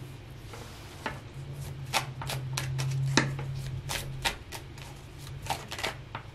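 Tarot cards being shuffled and handled by hand: irregular sharp clicks and taps of card on card. A low steady hum runs for about three seconds in the middle.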